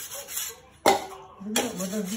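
Cleaver blade rubbing on a wet whetstone in short strokes that stop about a quarter of the way in. A single sharp knock comes just before halfway, and a voice starts talking near the end.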